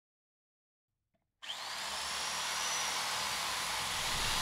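Electric hand drill starting suddenly about a second and a half in and drilling into a wall, its motor whine rising as it spins up and then holding steady.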